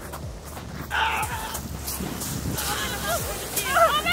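People laughing and calling out excitedly, loudest near the end, over a steady low rumble of wind on the microphone.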